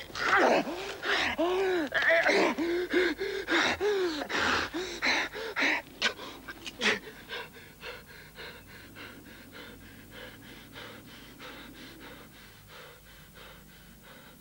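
A man gasping and panting hard with loud, strained breaths for about six seconds, then breathing quicker and quieter, fading toward the end: heavy breathing from exertion and struggle.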